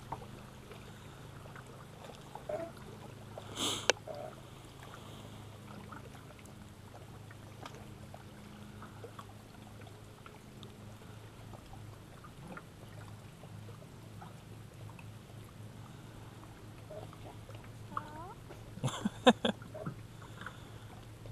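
Low steady hum aboard a small fishing boat, with a sharp click about four seconds in and a quick run of sharp knocks and clicks near the end.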